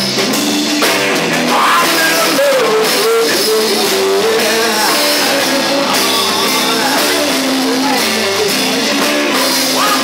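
Live rock band playing loudly and steadily: electric guitar over a drum kit.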